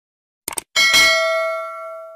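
Subscribe-button animation sound effect: a quick double mouse click about half a second in, then a bright bell ding that rings on and fades away.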